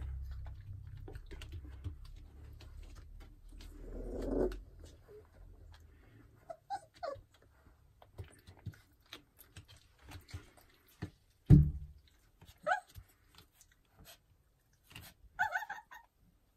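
Pitbull puppies giving a few short, high whimpers and squeaks, with light scuffling clicks as they shift about. A low rumble fills the first few seconds, and a single loud thump comes about eleven and a half seconds in.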